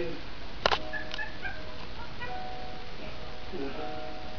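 Sitcom soundtrack played through a television's speaker: one sharp knock less than a second in, then a few held musical notes with a little voice.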